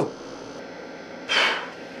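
A man sighing: one breathy exhale a little over a second in, over a steady faint hiss.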